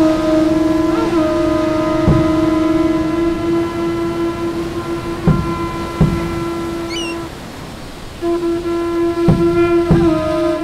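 A horn-like wind instrument holds one steady low note for about seven seconds, breaks off for about a second, and comes back in. A few soft thumps sound under it, and a brief high chirp sounds just before the break.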